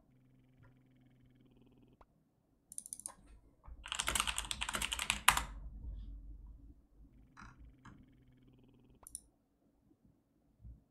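Computer keyboard typing: a fast run of keystrokes about four seconds in, lasting about a second and a half, with a few single clicks before and after it.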